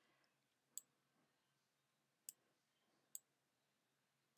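Three faint clicks of a computer mouse button, spaced unevenly, over near silence.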